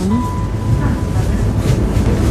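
Steady low rumble with a thin, steady high tone held above it.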